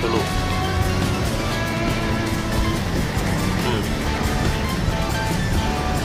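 Background music with steady held notes, a voice faint beneath it.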